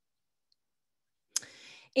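Near silence for over a second, then a single sharp click followed by a short, faint hiss just before speech resumes.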